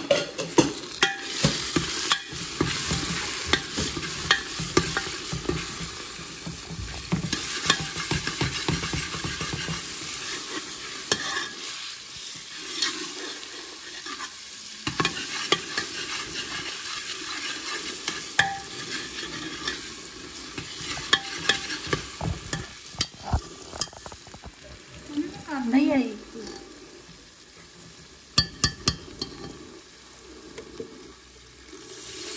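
Potatoes and peas frying in hot oil in a pan with turmeric and masala just added, sizzling steadily while a metal spoon stirs them and knocks and scrapes against the pan. A brief wavering tone sounds near the end.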